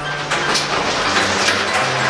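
Background music with steady held low notes and a light, regular beat.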